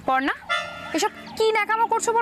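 A woman speaking over steady background music.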